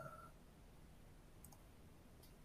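Near silence with a faint short blip at the start and a very faint click about a second and a half in.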